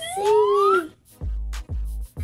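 Edited-in sound effect: a whistle-like tone gliding upward over a held lower note for most of a second. It is followed by two short low bass notes of music.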